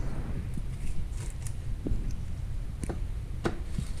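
Faint light ticks and taps from thin plastic cups being handled while honey is poured between them, over a steady low rumble.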